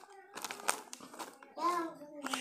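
Plastic foil snack packet crinkling in the hands in scattered short crackles, with a brief voice sound near the end.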